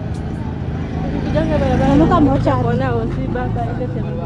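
A motor vehicle engine running steadily at low revs, a little louder in the middle, with people's voices over it.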